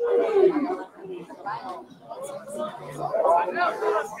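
Indistinct chatter of several people talking at once, voices overlapping so that no words stand out.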